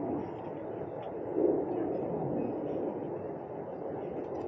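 Steady outdoor background noise, a low rumbling haze with no clear single source, swelling briefly about a second and a half in.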